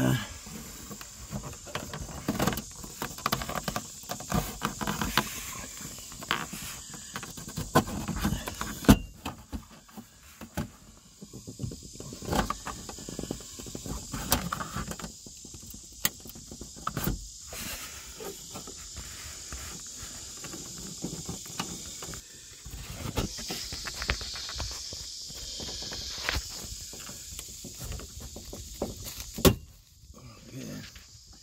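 Irregular clicks, knocks and scrapes of a plastic trim tool prying at a Cadillac STS's top dashboard panel and its clip tabs, with one sharp crack about nine seconds in.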